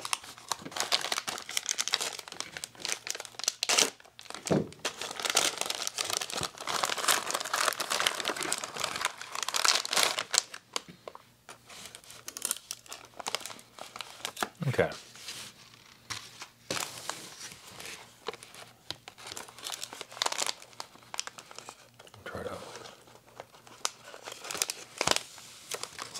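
Shiny wrapping paper of a cookie pack crinkling and tearing as it is unwrapped by hand, with a thin plastic cookie tray crackling as it is pulled out. The crackle is dense through the first half and comes in sparser bursts later.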